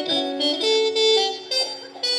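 Harmonica playing a short phrase of held chords, several notes sounding together, with a brief break about one and a half seconds in.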